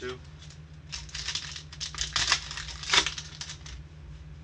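The wrapper of a 2019 Sage Hit football card pack crinkling as it is torn open by hand, with the loudest rip about three seconds in.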